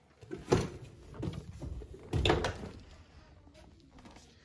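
A small metal rolling cart loaded with books being wheeled across the floor, rattling and knocking, with two louder bumps about half a second and two seconds in.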